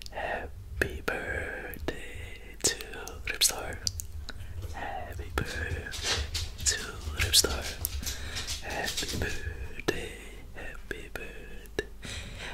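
A man whispering close to the microphone, in breathy unvoiced speech broken by short mouth clicks.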